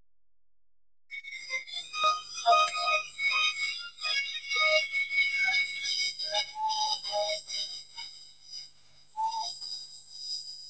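Shrill whistling, several high whistles sounding at once, over music. It starts about a second in, after a brief silence.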